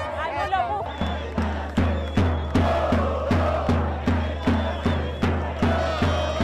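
Crowd of football fans chanting together over a steady drum beat, about two and a half beats a second, which starts about a second in.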